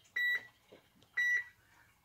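Digital bathroom scale beeping twice, about a second apart, as it measures and settles on a weight reading.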